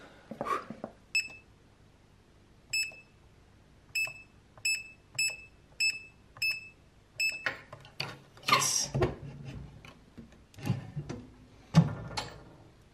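Electronic safe keypad beeping as a code is keyed in: about eight short, identical beeps at an uneven pace, then handling noise and a sharp thump near the end as the safe is opened.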